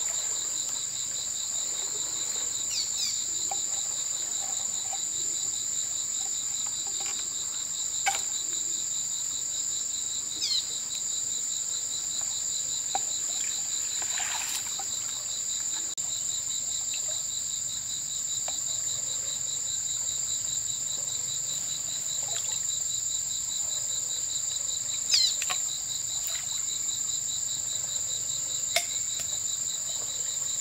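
A steady insect chorus: a continuous high-pitched buzz with a fast, pulsing trill just below it. A few brief chirps and sharp clicks come through now and then, the loudest about a quarter of the way in and again near the end.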